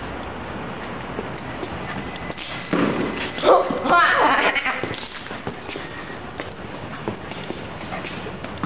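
Wordless voices calling out about three to four seconds in, over a steady hiss.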